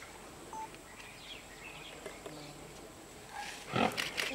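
A greater one-horned rhinoceros gives a short, loud call near the end, over faint chirping birds.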